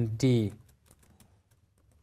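Typing on a computer keyboard: a quick run of light key taps as a short line of text is entered.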